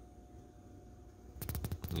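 Faint room tone, then about a second and a half in a quick, irregular rattle of small clicks lasting about half a second.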